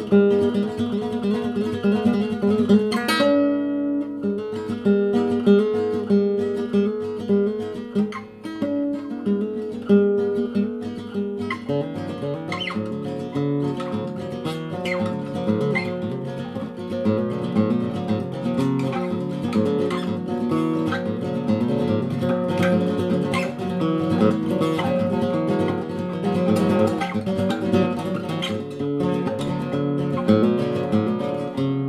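Solid-wood nylon-string classical guitar played solo in an altered tuning (D A D F# B E, low to high), improvised: lighter picked note patterns at first, then fuller, denser chords from about twelve seconds in.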